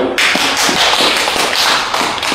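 Audience applauding: dense, loud clapping from a full house.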